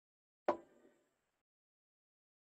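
A single short knock about half a second in, dying away within half a second.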